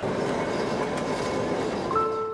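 Steady rumbling noise of a passing vehicle, starting abruptly. A piano note comes in at the very end.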